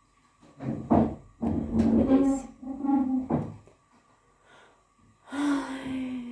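A woman speaking in two stretches, with a pause between them. A faint steady high tone runs underneath.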